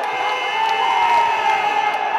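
A handball team and the crowd in a sports hall cheering and yelling in celebration of a late equalising goal, with several long, held shouts.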